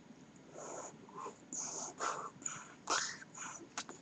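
A person making a run of short, breathy mouth noises, puffs of air through pursed lips, about two a second, beginning about half a second in.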